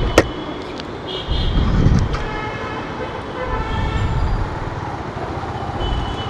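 City street traffic with a vehicle horn tooting briefly about one and two seconds in, over swells of low rumble.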